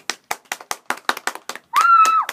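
Hand clapping: a quick, even run of crisp claps, about six a second, welcoming a guest. Near the end a brief high-pitched voice cuts in.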